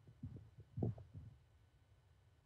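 A few faint, soft low thumps over a quiet remote-meeting audio line, the strongest about a second in.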